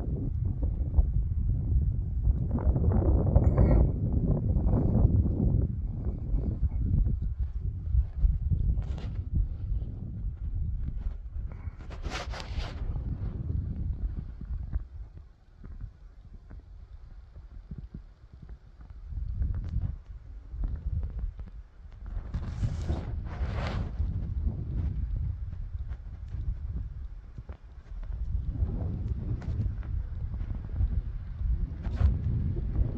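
Wind buffeting the microphone in uneven gusts, easing off for a few seconds past the middle. Two short hisses come about twelve and twenty-three seconds in.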